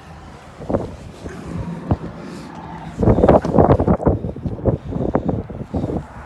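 Wind buffeting a phone's microphone, with handling rustle and a couple of knocks as it is carried out of a pickup cab. A low steady hum underlies the first half, and the wind gusts get much louder about halfway through.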